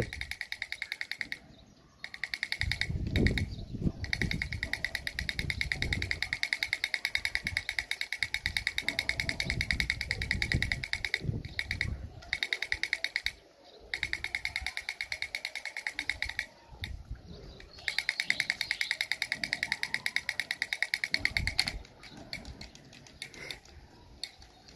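Battery-operated Motu drummer toy playing a rapid, tinny drumbeat of about five beats a second, cutting out briefly a few times.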